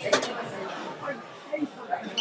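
Indistinct background chatter of voices in a bar room, with a sharp click at the very start.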